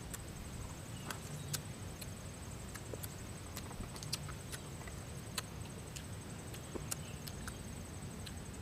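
Small, irregular clicks and cracks of brittle velvet tamarind shells breaking and dry twigs snapping as fingers pick and peel the pods.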